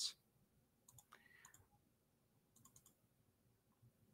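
Near silence: room tone with a few faint, short clicks, a cluster about a second in and another near three seconds in.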